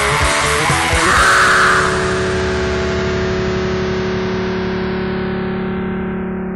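Depressive black metal ending a track: drums and distorted electric guitars play up to a last hit about a second in. A single distorted guitar chord then rings on and slowly fades.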